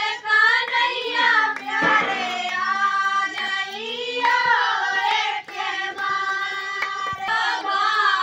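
A group of women and girls singing a Bundeli devotional bhajan together, with hand claps keeping time.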